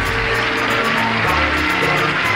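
Game show closing theme music playing steadily, with the announcer's last word of the sign-off at the very start.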